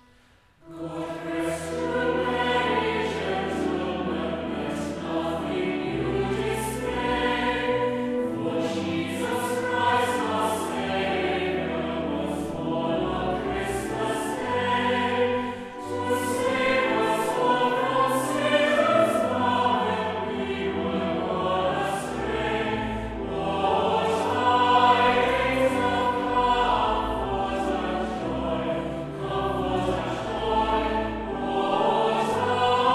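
Mixed choir singing a carol with organ accompaniment, low held bass notes under the voices; the singing begins about a second in, just after a held organ chord ends.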